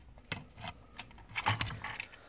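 Small scattered clicks and rattles of plastic and metal parts worked by hand: a spacer being pushed into the cutter hub of a manual curtain grommet punch, with a few sharper clicks about a second and a half in and again near the end.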